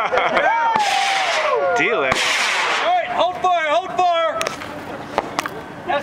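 Several people whooping and yelling while flares burn, with two short rushes of hiss in the first three seconds and a few sharp pops near the end.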